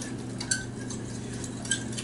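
Fork stirring a liquid cocoa and sugar mixture in a glass bowl, clinking lightly against the glass twice, about half a second in and near the end.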